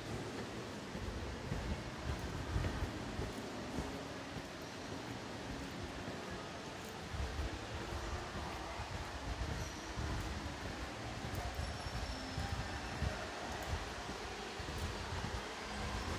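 Faint, steady low rumble with uneven handling noise from a phone carried while walking.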